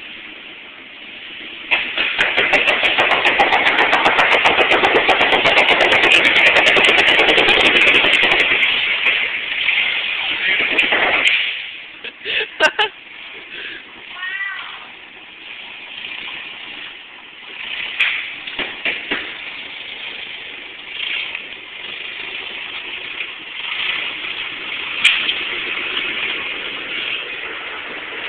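Large bubble wrap popping under a forklift's tyres: a loud, rapid crackle of bursting bubbles for about nine seconds, then a few scattered single pops.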